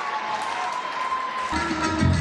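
Audience applauding. About three-quarters of the way through, recorded music with a strong bass beat and guitar cuts in abruptly.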